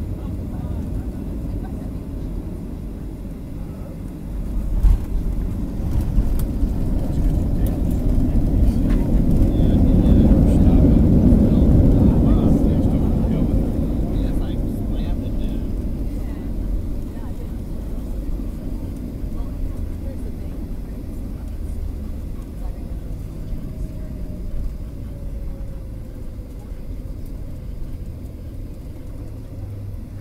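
Cabin noise of a Boeing 737 airliner during its landing rollout: steady engine and runway rumble, a thump about five seconds in, then the roar rising to its loudest around ten to twelve seconds in as the plane decelerates on the runway. It eases off as the jet slows to taxi speed, with a faint falling whine late on.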